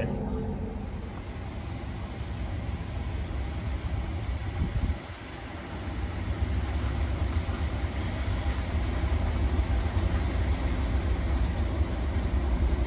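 Class 37 diesel locomotive approaching, its engine a low rumble that grows louder through the second half.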